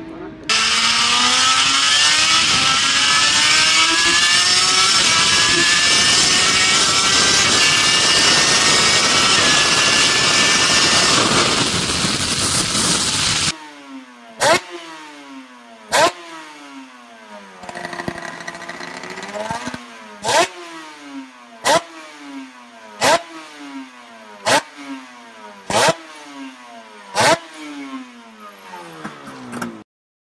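Suter MMX-500 V4 two-stroke racing motorcycle engine, first heard onboard at speed, pulling hard with its pitch climbing under heavy wind rush. It then cuts abruptly to the bike standing still, revved in about a dozen sharp throttle blips roughly one every one and a half seconds, each rising and falling quickly, with one slower rev about midway.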